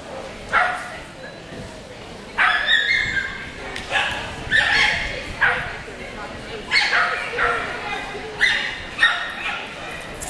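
A white shepherd dog barking repeatedly, about a dozen sharp barks in quick runs, the excited barking of a young dog during an agility run.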